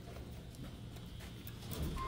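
Faint, irregular footsteps of people walking down a hallway, over a low steady hum.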